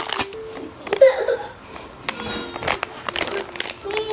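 Young toddlers' voices: short wordless calls and babbles about a second in and again later, with a few light knocks and clicks around them.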